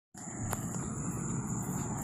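Outdoor package heat pump running in cooling mode: a steady fan and compressor noise with a low hum and a thin high whine over it, and a single click about half a second in.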